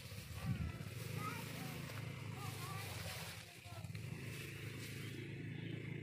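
Steady low hum of a small engine running, with faint, short, wavering higher-pitched sounds over it.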